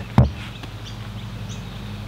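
A golf club striking a ball off a hitting mat laid over plywood: one sharp crack about a fifth of a second in. Faint bird chirps and a low steady hum follow.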